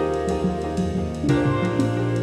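Instrumental passage by a dub/reggae-soul band: a drum kit keeps a steady beat over a deep bass line and held chords, and the bass moves to a new note about a second in.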